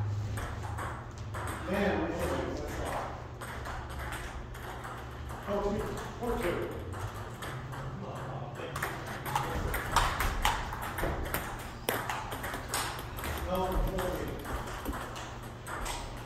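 Table tennis rallies: the light plastic ball clicks off paddles and the table top in quick irregular runs, densest a little past the middle. Voices talk briefly now and then.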